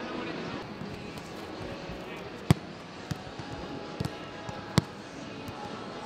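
Footballs being kicked in a passing drill: sharp thuds of boot on ball at irregular intervals, about five in all, the loudest about two and a half seconds in.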